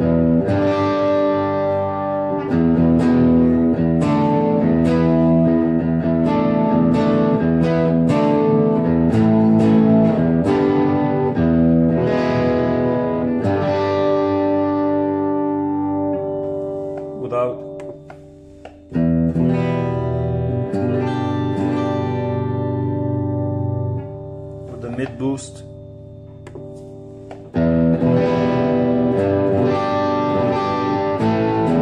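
Electric guitar, an Epiphone Les Paul on its bridge pickup, played through the Boss GT-1000's Mid Boost overdrive at default settings. It plays ringing chords and riffs, stops briefly about two-thirds of the way in, goes quieter with a sliding note, then returns to full chords. The sound comes through studio monitors and is picked up by a phone microphone.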